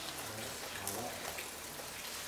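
A pause in a speech: steady background hiss of the room with faint, low voices in the first second.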